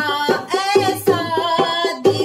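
A woman singing a Hindi devotional bhajan, her voice held and bending on long notes, with a dholak drum playing a quick steady beat underneath.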